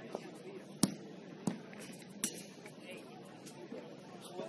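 Three sharp knocks, the loudest just under a second in, then two more about half a second apart, over faint distant voices.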